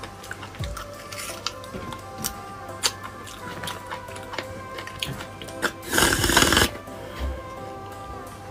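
Close-miked eating sounds of marrow being sucked from a sauce-covered marrow bone: scattered wet mouth clicks, then one loud slurp about six seconds in. Steady background music plays throughout.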